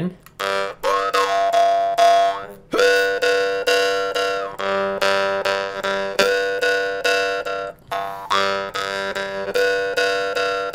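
A jaw harp tuned to G, plucked over and over in a quick rhythm to sound a buzzing drone on one note. Its overtones shift between passages a few seconds long as the player opens and closes his throat at the glottis, changing the colour of the sound.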